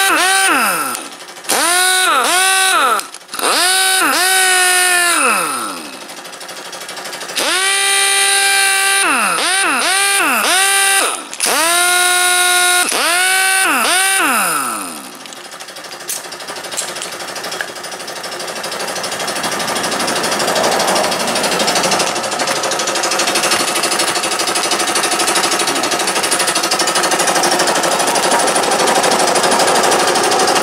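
Air impact wrench run free in about eight short bursts, each one a whine that spins up, holds and winds down. From about 16 s the small electric air compressor kicks on and runs steadily, growing louder as it refills the tank that the tool has drawn down.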